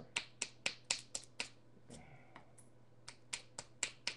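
Quick, light clicks of a knapping tool tapping the edge of a flint biface, about four a second, working the edge to isolate a striking platform. The tapping pauses in the middle and starts again near the end.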